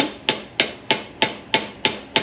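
A surgical mallet taps steadily, about three strikes a second, driving a canine hip-replacement femoral stem into the femur. Each blow gives a short metallic ring. The stem is still sinking and not yet fully seated.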